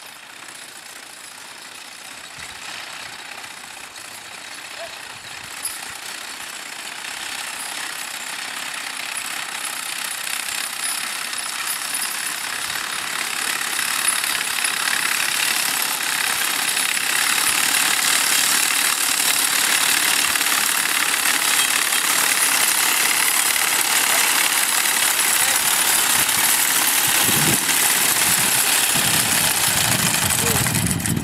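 Horse-drawn sickle-bar mower pulled by a mule team, its ground-driven gearing and reciprocating cutter bar clattering steadily as it cuts hay. The clatter grows louder through the first half and then stays loud as the mower comes close.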